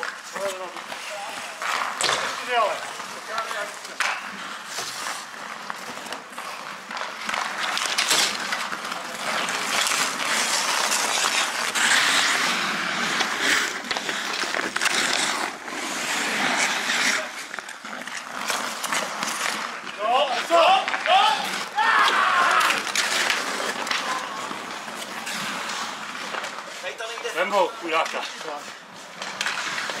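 Ice hockey skate blades scraping and carving on the ice, with occasional sharp clacks of sticks or puck, and players' voices calling out now and then.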